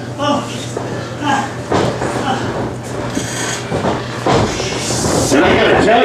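Indistinct voices and shouts in a hall, getting louder and busier in the second half, over a steady low hum.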